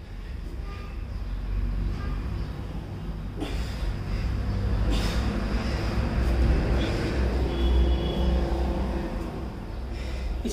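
Low, steady rumble of road traffic, growing louder from about three and a half seconds in, with a brief tone near the eight-second mark.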